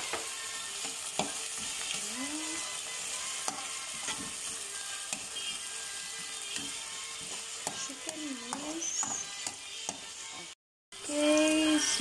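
Minced chicken sizzling in hot oil with golden-browned garlic in a pan, while a slotted metal spatula stirs it and clacks and scrapes against the pan. The sound cuts out briefly near the end.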